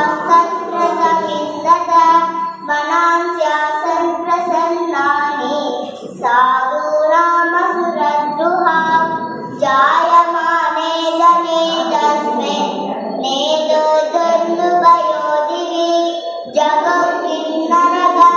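A young girl chanting a sloka in a sung, melodic style, her voice holding long notes in phrases of a few seconds with short breaks between them.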